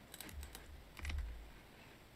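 A few light keystrokes on a computer keyboard, with another about a second in: the rotate key being pressed.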